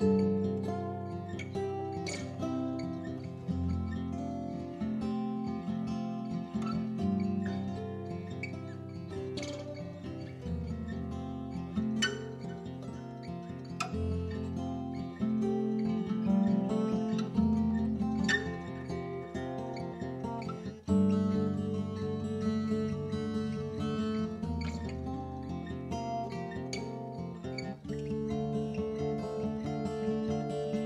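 Background music led by strummed and plucked acoustic guitar, with a change in the music about 21 seconds in.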